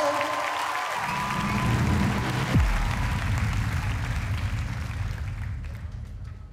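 Studio audience applauding, a dense clapping that gradually fades out near the end.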